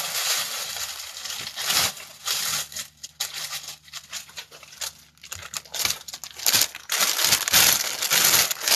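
Plastic garment packaging crinkling and rustling in irregular bursts as packaged clothes are handled, quieter in the middle and busier again near the end.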